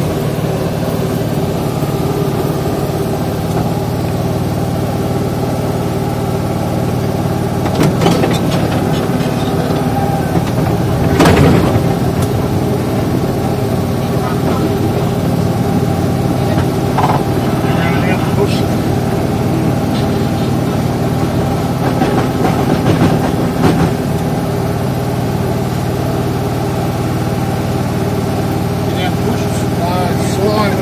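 Small tourist train's engine running steadily at idle, heard from aboard the carriage, with a few short knocks and clanks around the middle.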